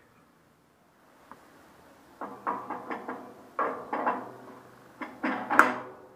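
A run of knocks and clunks, each with a short ringing tail, as a cast-metal bandsaw wheel fitted with a rubber tire is handled and fitted back onto the saw. They start about two seconds in and the loudest comes near the end.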